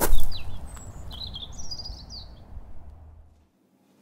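Small birds chirping, a few quick high calls in the first two seconds, over a low outdoor rumble that fades out to silence a little after three seconds.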